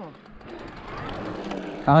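Electric mountain bike rolling on a paved pump track: a steady rolling noise of tyres on asphalt that builds gradually, with a light mechanical whir.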